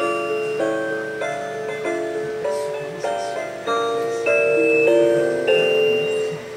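Light-up ceramic Christmas tree figurine playing a song from its built-in sound chip: a simple melody of held, chime-like notes that step from one to the next about every half second.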